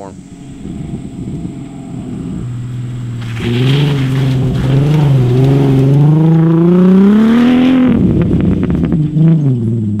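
Turbocharged 3.2-litre VR6 engine of a lifted MK4 Volkswagen R32 under way. Its note wavers with the throttle, then climbs steadily for a couple of seconds before dropping off about eight seconds in, and settles to a steady lower note near the end.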